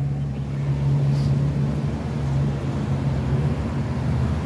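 Street traffic: a motor vehicle's engine running close by with a steady low hum, over road noise.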